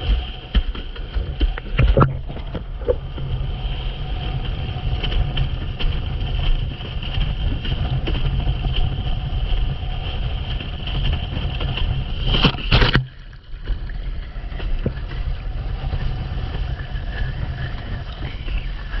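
Wind buffeting an action camera's microphone, mixed with the rush of water under a windsurf board planing over chop. About two-thirds of the way through, a loud splash of spray hits the camera, and the sound briefly drops quieter after it.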